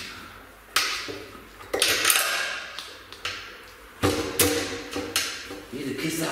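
Metal parts and tools knocking against each other during hand assembly of a motorcycle at its fuel tank and frame. About seven sharp clanks come at uneven intervals, each with a short ringing fade.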